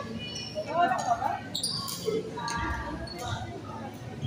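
Players' voices talking indistinctly on an indoor badminton court, with a few short, sharp knocks a little after halfway through.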